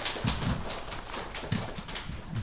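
A small audience clapping: a quick scatter of individual hand claps, with a few dull knocks underneath.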